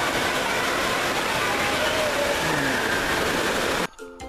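Indoor waterpark din: a steady rush of spraying and splashing water from a water play structure, mixed with the voices of a crowd. It cuts off abruptly near the end.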